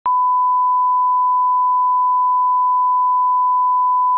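Steady 1 kHz line-up test tone, the pure beep that accompanies SMPTE colour bars, held at one pitch without a break.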